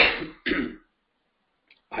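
A person clearing their throat, two short rough bursts in quick succession.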